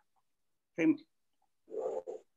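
Two brief bits of voice over a video call, a short voiced syllable about a second in and a softer, muffled one near the end, with dead silence between them.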